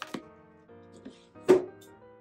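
Soft background music with held notes; about a second and a half in, one sharp thump as a closed cash-envelope wallet is set down on the tabletop, with a small click just before at the start.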